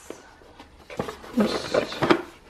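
Hands handling a corrugated cardboard shipping box: a light tap about a second in, then a short stretch of cardboard rubbing near the end, under a brief murmur of voice.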